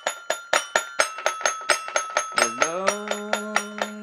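Little Tikes Jungle Jamboree Tiger 2-in-1 toy piano-xylophone playing a steady run of bright struck notes, about four a second. A little past halfway a singing voice slides up into one long held note over it.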